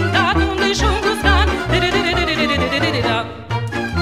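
Bucovina folk music: a band playing a lively tune with a bass pulse on the beat and an ornamented, wavering high melody. A little over three seconds in, the sound briefly thins and dips before the tune carries on.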